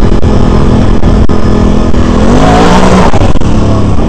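Can-Am Renegade 800R ATV's Rotax 800 cc V-twin engine running under way on a trail. Its pitch rises and then falls a little past halfway as the throttle is worked. A few short knocks are heard from the ride.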